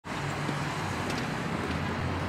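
Steady outdoor ambience: an even low rumble with hiss and no distinct events.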